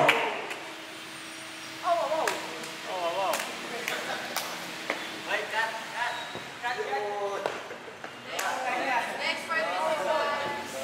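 Music cuts off at the very start, leaving a room of people talking among themselves in short, scattered bits of speech, with a few sharp taps here and there.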